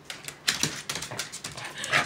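A beagle's claws clicking and scrabbling on a hard floor as it tugs at and chases a plush toy: many quick, irregular clicks starting about half a second in.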